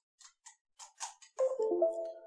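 Light clicks of a micro SD card reader being plugged into a computer's USB port, then, about a second and a half in, the louder Windows device-connected chime: a short run of clear notes as the computer recognises the card.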